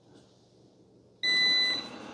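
Eufy RoboVac 25C robot vacuum giving a single steady electronic beep of about half a second, a little over a second in, signalling that it has started cleaning.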